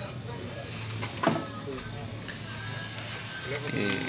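Faint talk in the background over a steady low hum, with one short click about a second in.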